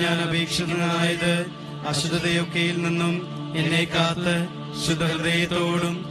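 A voice chanting a Malayalam novena prayer to St Joseph in a sung, melodic recitation over a steady held drone accompaniment.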